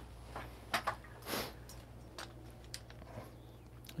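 Faint handling noise as the camera is picked up and moved: a few soft clicks and a brief rustle over a low steady hum.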